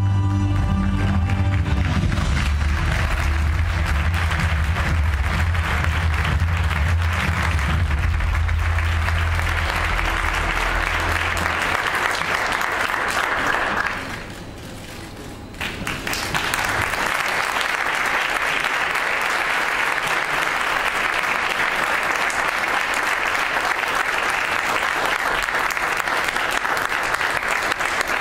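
Audience applauding over music with a deep bass line, which fades out about halfway through. The applause breaks off for about two seconds near the middle, then carries on.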